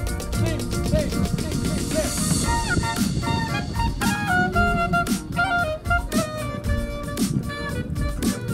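Live clarinet playing a melody over an electro-Balkan backing track with a steady beat; the clarinet comes in about two and a half seconds in, in held notes that step from one to the next.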